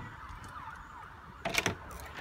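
A front door's lever handle and latch clicking and clattering as the door is opened, about one and a half seconds in, over a faint high whine that slides up and down in pitch.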